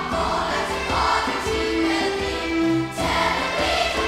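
A choir of young voices singing a melody in held notes, recorded live on stage.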